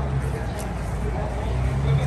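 Steady low hum of motor traffic, with faint voices in the background.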